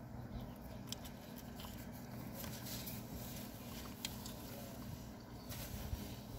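Faint chewing of a mouthful of pepperoni pizza, with a few small mouth clicks, over a low steady hum inside a car.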